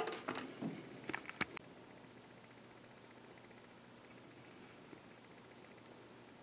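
A few light clicks and taps from handling in the first second and a half, then near silence with only room tone.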